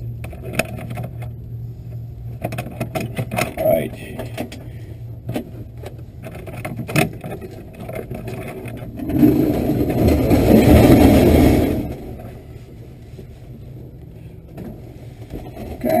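Glider's ground roll on a rough dirt strip during an aerotow takeoff: a steady low drone from the tow plane's engine ahead, with many short knocks and rattles from the airframe. It swells into a louder rushing rumble for about three seconds past the middle.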